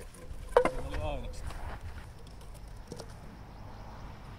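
Wooden kyykkä throwing bat landing and striking the wooden pins: one sharp wooden clack about half a second in, then a lighter clack near three seconds.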